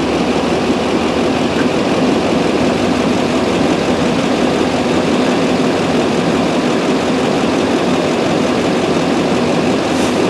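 Fire truck's engine idling steadily close by, a constant low running sound that does not change.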